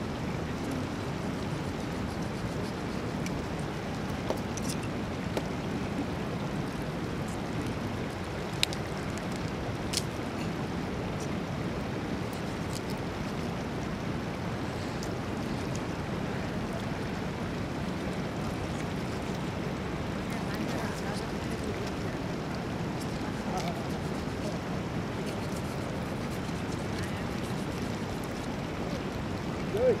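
Sheep carcass being cut up by hand with a knife: a few sharp knocks of the blade over a steady rushing outdoor noise.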